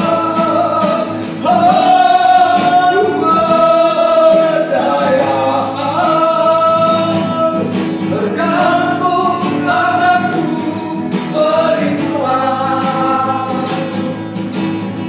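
A man and a woman singing a slow worship song in long held notes, accompanied by strummed acoustic guitar.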